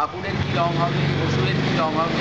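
A man talking, with a steady low hum underneath.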